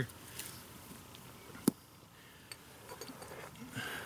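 A quiet pause with faint handling noise, broken by one sharp click a little before the middle and a softer tick a second later.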